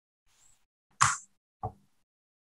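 A person's short, sharp breath sound close to the microphone about a second in, like a cough or a forceful exhale, followed by a shorter, lower burst; a faint breath comes just before.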